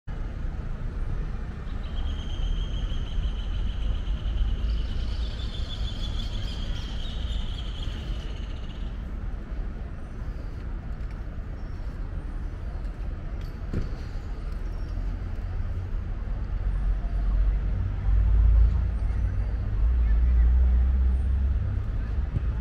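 City street ambience: traffic running, with a steady high-pitched whine for several seconds early on and a low rumble that swells near the end as a vehicle passes.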